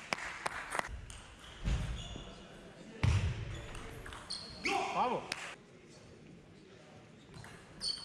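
Table tennis rally: the celluloid ball clicking sharply off bats and table, with heavy thuds from the players' footwork on the wooden hall floor. A voice calls out about five seconds in.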